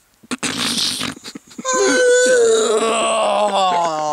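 A young man's breathy laughing, then one long strained vocal wail that starts high and slides down in pitch, while a nylon knee-high stocking is stretched up off his face.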